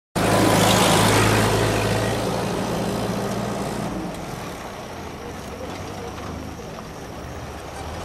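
A motor vehicle's engine running close by, loud at the start and fading away over the first few seconds, leaving a lower steady street noise.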